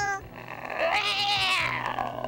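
Cartoon cat's drawn-out meow. It starts about half a second in, rises and then falls in pitch, and fades near the end.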